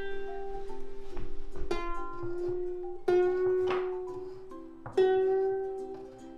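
New ukulele G string on an Ibanez UK C-10 plucked four times, roughly every one and a half seconds, while it is tuned up by hand at the peg. Each note rings out and fades, and the pitch bends slightly as the peg turns. The freshly fitted string is still stretching, so this is only a rough tuning.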